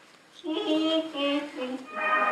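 A high voice singing a short melodic phrase of several held notes, starting about half a second in.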